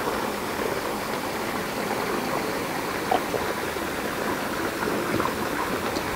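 A man gulping down a glass of wine, with a couple of faint swallows about three and five seconds in, over a steady rushing, water-like background noise.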